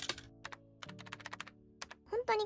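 Rapid runs of light clicks and taps, like typing, over quiet background music.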